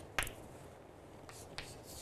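Chalk writing on a blackboard: a sharp tap of the chalk against the board just after the start, then faint scratchy strokes with a couple of light ticks.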